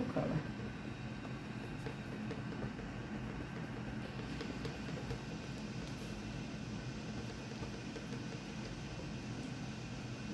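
Steady low room noise with a faint, even hum and hiss and no distinct events.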